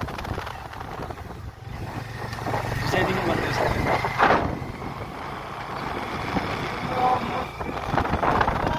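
A vehicle's engine rumbling steadily while moving, with wind on the microphone; the sound swells about three to four seconds in.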